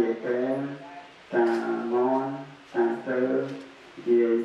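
Buddhist monk chanting a recitation into a handheld microphone, in phrases of a second or so with long syllables held on steady pitches and short breaks between phrases.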